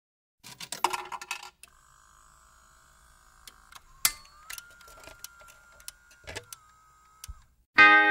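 Jukebox start-up: a short burst of metallic rattling like coins dropping in, then the mechanism running with a thin whine that steps up slightly in pitch, broken by a few sharp clicks. A steel-guitar country intro starts loudly just before the end.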